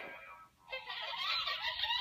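Light-up plastic toy playing a melody through its small speaker, starting after a brief pause about half a second in.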